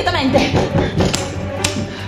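Two sharp knocks or clicks at a wooden front door, about half a second apart, over background music with a steady beat.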